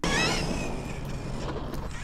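RC4WD Miller Motorsports Rock Racer running on asphalt: its brushless motor's whine falls in pitch near the start, over a steady wash of tyre and outdoor noise as it drives away.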